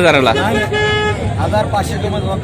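A single short horn toot, one steady pitched tone lasting about half a second, sounding over men talking in a crowd.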